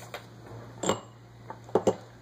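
A few light clicks and knocks, about five, the loudest two close together near the end, over a steady low hum.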